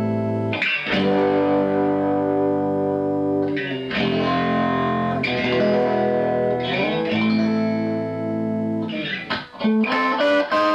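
Stratocaster-style electric guitar played through a 6V6 push-pull tube amp into a 12-inch Celestion speaker. It plays a handful of chords, each left to ring for two to three seconds.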